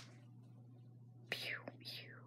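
Quiet room tone with a steady low hum, then about a second and a half in two short, soft whispered sounds from a person.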